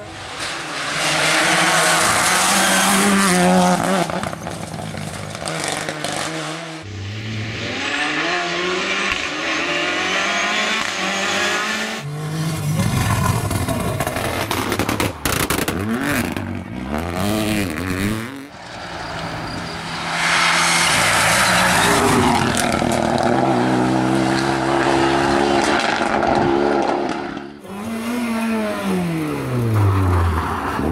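Rally cars passing one after another at full throttle, engines revving up and falling back through gear changes, with tyres squealing in the corners. The sound cuts abruptly between cars several times.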